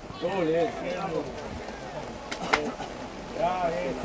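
Faint, distant voices shouting and calling out, much quieter than close speech, right after a penalty goal. Two sharp clicks come about two and a half seconds in.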